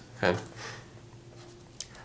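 A spoken "okay", then faint handling of a pen and a paper handout, ending in one sharp click as the pen comes down to the page.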